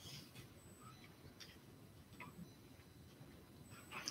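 Near silence: room tone with a few faint, scattered small clicks.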